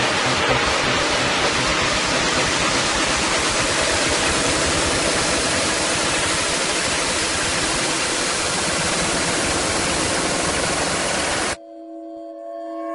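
A steady wash of white noise without a beat in an electronic dance-music mix, cutting off suddenly near the end into a quieter held synth chord.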